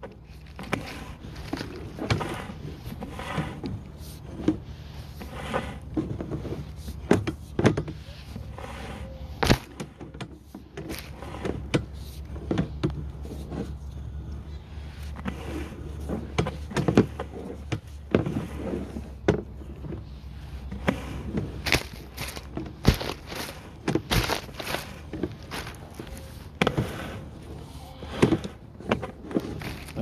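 Sewer inspection camera's push cable being pulled back out of a drain line and handled at the reel, giving irregular clicks and knocks throughout over a low steady hum.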